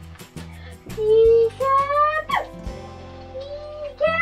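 A child's high voice holding wordless sung notes, with a sharp falling squeal about two seconds in, over background music with a steady beat.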